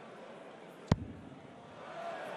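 A steel-tip dart striking a Winmau bristle dartboard: one short, sharp thud about a second in, over a faint murmur from the arena crowd.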